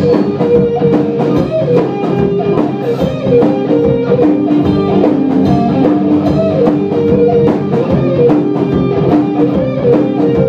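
Live rock band playing an instrumental stretch with no singing: electric guitars, bass guitar and drum kit keeping a steady beat.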